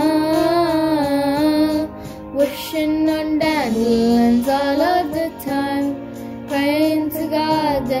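A young girl singing a slow pop ballad, holding long notes with vibrato and sliding between pitches, with brief pauses for breath.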